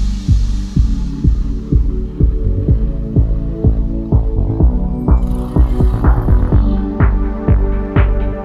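Background electronic music with a steady bass beat, about two beats a second, over sustained low bass notes.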